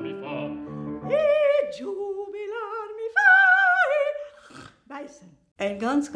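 A piano chord dies away. Then a single voice sings a few short operatic notes with wide vibrato, rising to a loud, held high note about three seconds in. Speech starts near the end.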